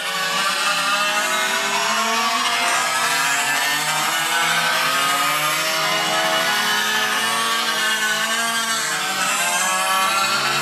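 Several 1/5-scale gas RC cars' small two-stroke engines revving and backing off as they race, their pitches rising and falling over one another.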